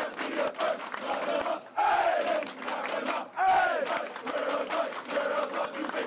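A packed group of football players shouting and clapping together, with two loud whooping yells, about two and three and a half seconds in, each just after a brief lull.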